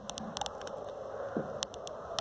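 Faint scattered light clicks and taps, with one short squeak about a second and a half in, as the wind turbine's generator leads are handled and touched together to short them.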